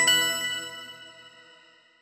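Final chord of a short chime-like intro jingle: bell-like tones struck together once and ringing out, fading steadily over about two seconds.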